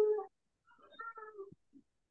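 A cat meowing: one long, steady call that ends just after the start, then a second, fainter call that drops in pitch at its end.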